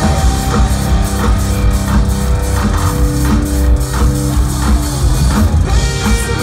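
Metalcore band playing an instrumental passage live: electric guitars holding sustained notes over a drum kit, loud and steady, as heard by a phone microphone in the crowd.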